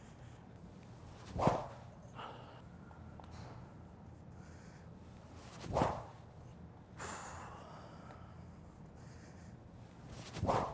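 Two full-speed swings of a weighted SuperSpeed Golf speed-training stick (the heavy stick), each a short swish through the air. The first, about a second and a half in, is the louder, and the second comes about four seconds later.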